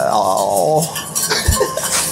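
A wire whisk beating fast against a stainless steel saucepan, a quick metallic clatter, as béarnaise sauce is whisked. A man's long drawn-out vowel fills the first part, and there is one low thump near the end.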